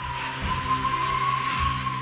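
Recorded performance soundtrack: a steady mix with one sustained high tone rising slightly in pitch, over a rushing noise and low held notes.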